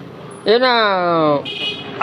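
A man's voice holding one long drawn-out vowel, starting about half a second in, sliding down in pitch for about a second, then trailing off.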